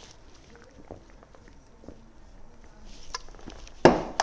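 Faint, soft dabbing and brushing of a paintbrush working wet paint into a painted wooden end table, a little busier near the end, then one sharp click just before the end.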